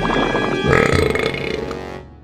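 One long, loud cartoon burp voiced for a bloated stick-figure character, starting abruptly and trailing off near the end.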